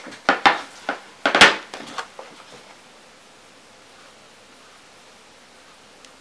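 A few sharp knocks and clatters as a paint palette and sheets of paper are handled and set down on the table, the loudest about a second and a half in. After that, only faint room tone.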